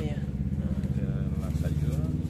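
An engine running at idle nearby: a steady low rumble with a fast, even pulse. Faint voices come through briefly over it.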